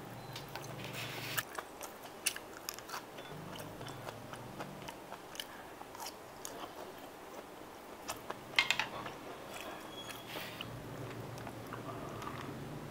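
Close-miked chewing and biting of steamed pork intestines and fresh greens, with many small wet clicks and crunches. The loudest bite comes late on.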